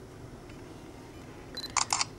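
Low steady background hum, then near the end a short high beep followed by two sharp clicks in quick succession.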